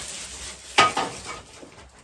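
Plastic-wrapped metal bars of a router table stand being handled and put down: the wrapping rustles, with one sharp metallic clank a little under a second in and a few lighter knocks after it.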